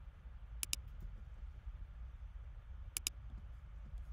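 Computer mouse button clicked twice, about two and a half seconds apart, each click a quick press-and-release pair, over a low steady background hum.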